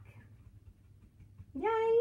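Quiet room tone with a steady low hum, then a woman's high-pitched exclaimed "yay" near the end.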